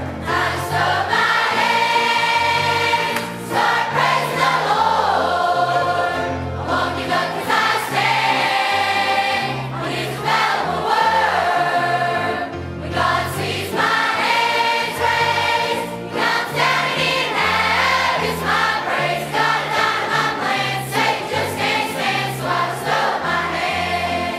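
Large youth choir of children and teenagers singing a southern gospel song together, over an instrumental accompaniment with a moving bass line.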